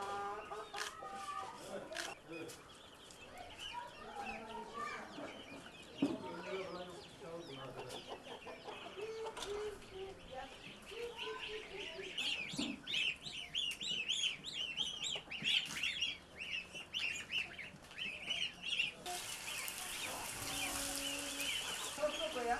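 Chickens clucking, with a dense run of quick high-pitched chirps in the middle. About three seconds before the end, a stream of water starts pouring into a plastic basin.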